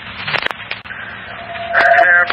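Scanner radio hiss and static with a few sharp clicks as a transmission keys up. A radio voice starts coming through near the end.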